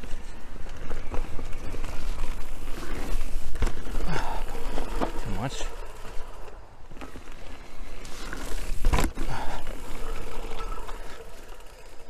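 Electric mountain bike being ridden over a bumpy dirt trail: wind rumble on the camera microphone, with the bike rattling and knocking over the ground. A hard thump comes about nine seconds in.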